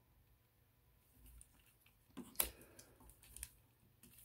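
Faint clicks and handling of a plastic Transformers Wheeljack action figure's parts as it is transformed, with one sharper click a little before the middle.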